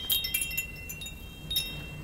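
Wind chimes tinkling: a cluster of light strikes rings on in high, clear tones, with a fresh jingle about a second and a half in.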